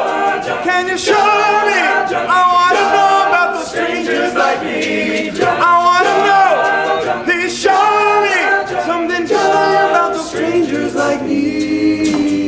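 All-male a cappella group singing: a lead voice over sung backing harmonies, with no instruments.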